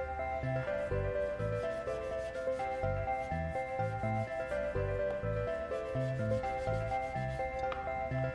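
Background music with a gentle melody and a steady bass line, and over it a rubbing, scratchy sound of a plastic toy knife sawing back and forth across a plush toy spring onion on a plastic cutting board.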